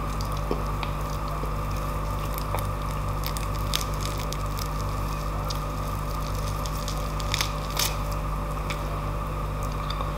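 Hands tearing apart a slab of oven-roasted beef with a charred crust: scattered soft squishes and crackles of the crust and meat fibres, with a few sharper ones in the second half, over a steady background hum.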